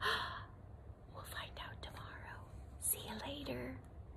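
A woman's quick, sharp gasp, followed by a few seconds of soft whispering.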